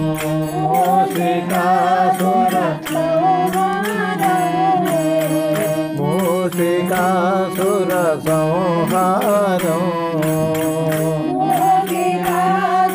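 Telugu devotional bhajan music to Ganesha: a wavering melody over a steady low drone, with a quick, even percussion beat.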